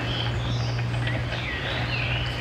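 Small birds chirping in the background, a few short high calls scattered through, over a steady low hum.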